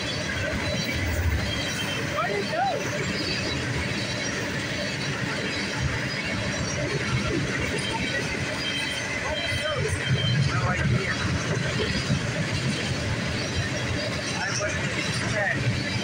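Freight cars of a CSX coil train rolling past on steel wheels and rail, a steady rolling noise without a break.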